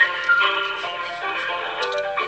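Telephone hold music, a tune of separate held notes, playing through a phone's speaker while the call is on hold.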